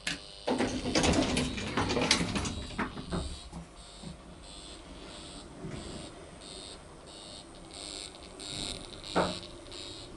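Al Red hydraulic elevator starting a trip after a floor button is pressed: a few seconds of loud rattling and clattering as the car door shuts, then a quieter, evenly pulsing hiss while the car travels, with one short sharp knock about nine seconds in.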